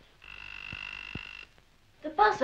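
An electric buzzer sounds once: a steady, high buzz lasting just over a second that stops abruptly.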